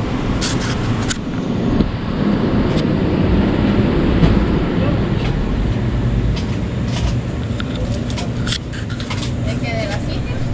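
Street noise: a steady rumble of vehicle traffic with background voices and a few scattered clicks.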